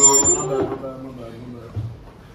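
A voice trails off in the first moment as loud playback of a rap beat over studio monitors cuts out, leaving quiet room noise with a light knock near the end.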